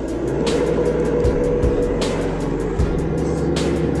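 Isuzu D-Max diesel engine, heard from inside the cab, held at full throttle and running at a steady pitch that does not climb: it will not rev past about 2,000 rpm, the low-power fault being tested. Background music plays over it.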